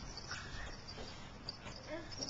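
A few faint, brief vocal sounds from a toddler, with light taps in a quiet room.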